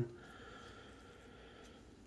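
Quiet room tone: a faint, even hiss that fades out near the end.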